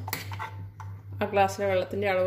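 A metal spoon clinks and scrapes against a steel pot as thick rice-and-jaggery batter is stirred, giving a few sharp clicks early on. About a second in, a woman starts speaking, over a low steady hum.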